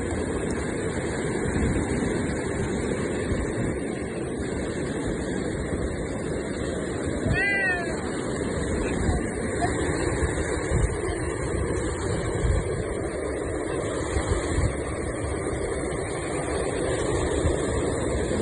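Breaking surf and wind buffeting the microphone, a steady rush throughout. About seven and a half seconds in, a gull gives one short, falling mewing call.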